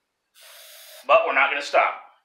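A man draws in a sharp breath, a soft hiss lasting about half a second, then about a second in makes a brief, loud exclamation.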